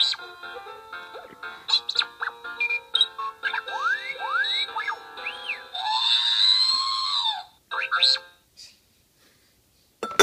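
R2-D2 cookie jar's electronic sound chip playing a tune with R2-D2 beeps and rising whistles, then a long squealing burst about six seconds in; the sound stops after about eight seconds.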